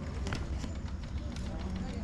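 Quiet outdoor background: faint, distant voices over a steady low rumble.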